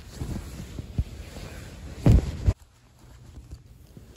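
Nylon sleeping-bag shell rustling and crumpling as a person crawls into the bag, with a few dull thumps about one and two seconds in.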